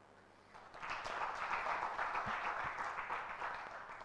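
Audience applauding, starting under a second in and fading away near the end.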